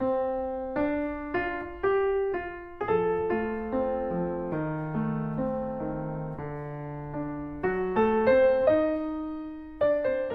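Solo grand piano playing a slow piece: notes and chords struck a few at a time and left to ring and fade, with a stretch of held, fading notes in the middle before new notes come in about eight seconds in.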